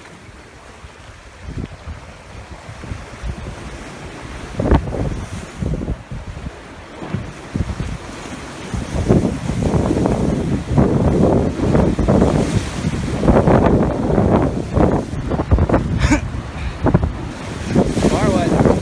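Surf breaking and washing against the rocks of a jetty, with wind buffeting the phone's microphone. It gets louder about halfway through, with irregular surges as waves hit the rocks.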